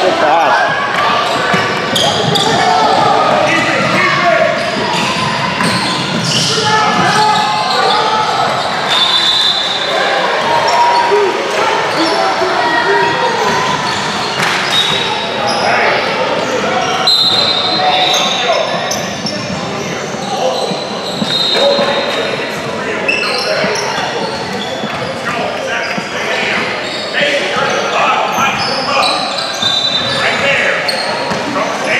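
Basketball game in an echoing gym: a ball bouncing on the hardwood court, short high sneaker squeaks, and continuous indistinct chatter and calls from players and spectators.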